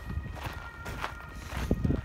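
Footsteps of a person walking, irregular steps with a louder one near the end.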